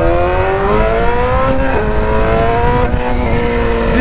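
BMW S1000 sportbike's inline-four engine accelerating hard through the gears. The pitch climbs, drops at an upshift about one and a half seconds in, climbs again, and dips at another shift near the end, with wind rushing over the helmet-level microphone.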